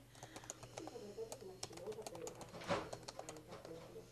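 Computer keyboard being typed on: a quick, uneven run of key clicks, with one louder keystroke a little past the middle.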